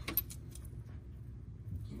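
A few light metallic clicks and clinks in the first half-second as fingers work the shift-rod clip on a BMW E36 transmission's shifter linkage, over a low steady hum.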